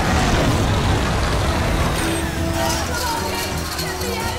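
Flamethrower blast: a loud, dense rush of fire noise that slowly eases off, with film score music coming in about halfway through.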